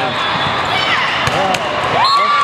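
Players and spectators shouting and calling over one another during a volleyball rally, with a couple of sharp thuds of the volleyball being struck past the middle.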